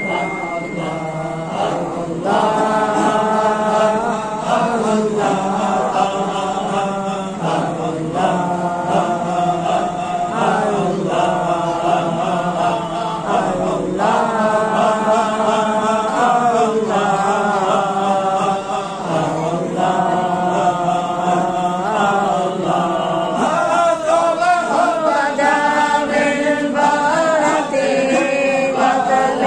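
A group of men chanting together in unison: a devotional Arabic chant to the Prophet, sung in phrases a few seconds long with short breaths between them.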